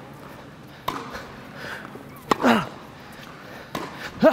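Tennis rally in a large indoor hall: three sharp racquet-on-ball strikes about one and a half seconds apart, the middle one followed by a short falling vocal grunt.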